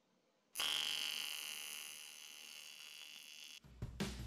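AC TIG welding arc on a cast aluminium Sea-Doo 717 tuned pipe: a steady electric buzz that starts suddenly about half a second in, slowly gets quieter and cuts off just before the end, where drum-kit music begins.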